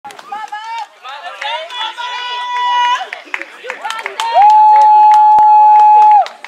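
Softball players' voices calling out around the diamond, with two long, high held shouts. The second shout is the loudest, about two seconds long, with a short rise at the start. A sharp knock comes in the middle of it.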